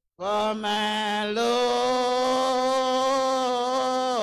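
Slow, drawn-out hymn singing: a man's voice holds one long note after a brief break at the start, with a slight step up in pitch about a second and a half in.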